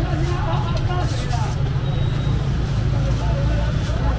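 Busy market ambience: indistinct voices of vendors and shoppers over a steady low rumble, with a brief clatter about a second in.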